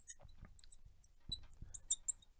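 Marker squeaking on a glass lightboard as letters are written: a quick series of short, high-pitched chirps, several a second, with faint taps of the pen tip.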